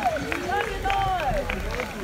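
People's voices, short calls and talk over an outdoor crowd, with no music playing.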